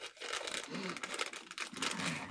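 A sealed medical gauze packet being torn open by hand, its wrapper crinkling in a run of small irregular crackles.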